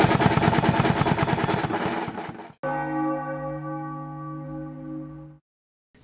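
A metal drum kit playing a fast, dense pattern that fades out after about two and a half seconds. A single low bell-like tone then sounds and is held for nearly three seconds before cutting off suddenly.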